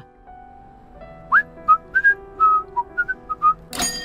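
A man whistling a short cheerful tune in clear, separate notes, the first sliding up. Near the end, a sharp bright ring, like a bell, that lingers.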